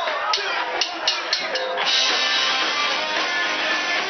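Live rock band with electric guitars and drum kit: a few separate sharp drum hits, then the full band comes in together about two seconds in and plays on loud and dense.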